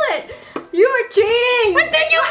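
A person's voice making drawn-out, sliding vocal sounds with no clear words, one long held arc of pitch in the middle.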